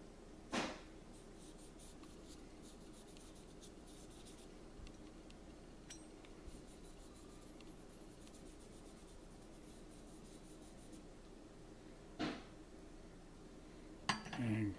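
Faint scratchy rubbing of a cotton swab worked over a 1095 carbon steel knife blank while cold-bluing solution is applied. Two short, louder swishes come just after the start and near the end.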